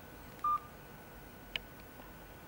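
Touchscreen mobile phone's key tone: one short, high electronic beep about half a second in, followed by a faint click about a second later.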